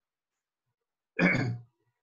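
A man clearing his throat once, briefly, about a second in, after a moment of silence.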